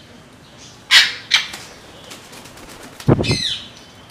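Parrot sounds: two sharp squawks about a second in, then a brief flurry of wing flaps with a falling call about three seconds in.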